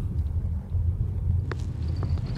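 Steady low rumble of a car driving slowly, heard from inside the cabin, with a single short click about one and a half seconds in.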